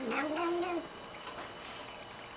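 Domestic cat giving a short meow-like call, under a second long, rising then holding its pitch. It is the noise she makes while drinking water from her dish.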